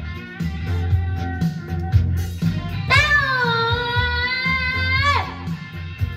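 Rock music with guitar over a steady low beat, and a toddler singing into a microphone: one long held note about halfway through that drops off at its end.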